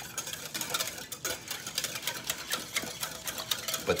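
Wire whisk stirring a salt brine in a glass bowl, its tines clicking rapidly and unevenly against the glass.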